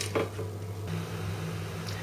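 A steady low hum, with no other clear sound over it.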